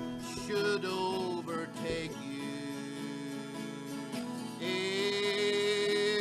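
A man singing to his own twelve-string acoustic guitar accompaniment; the voice eases off in the middle while the guitar carries on, then comes back strongly near the end.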